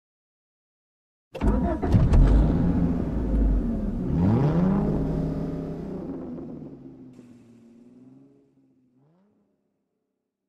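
A car engine starts suddenly with a few sharp clicks about a second in and runs loud and low. It revs once, its pitch dipping and rising, then settles and fades out.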